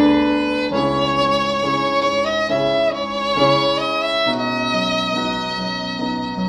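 Acoustic violin bowed in a slow, legato melody of held notes that step to a new pitch every half second to a second.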